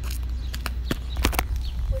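Handling noise from a phone being picked up and moved: a string of irregular knocks and rubs close to the microphone over a steady low rumble.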